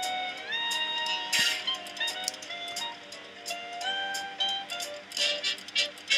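Monopoly Super Money online slot game music during free spins: a tune of held notes stepping from pitch to pitch, with a couple of short bright chimes.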